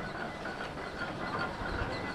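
Steam crane working, a steady hiss of steam with a low thud near the end.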